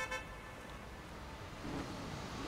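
A short car horn toot right at the start, then steady street traffic noise.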